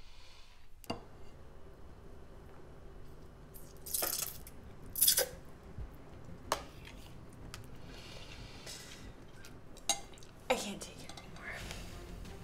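Eating sounds at a table: a spoon and chopsticks clinking and scraping against a ceramic bowl and a plastic tub. Several short, loud noises stand out, the loudest about four and five seconds in, which fit the slurping that is complained about moments later.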